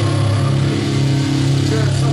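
Distorted electric guitar and bass through the amplifiers, holding a loud, steady low chord without a drum beat.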